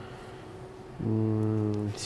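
A man's voice holding a hesitation sound, one flat, steady "uhhh" for about a second after a short pause, as he searches for the next word.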